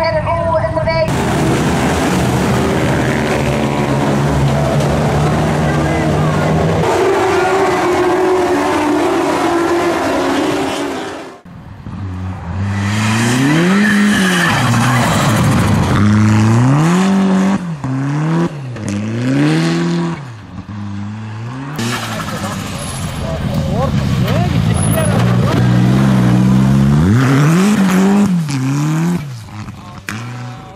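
Rally car engines on snowy stages, revving up and dropping back again and again as the cars shift and lift through the corners, with one hard rising rev near the end. The first third is a loud, noisy stretch of trackside sound with an engine running steadily under it.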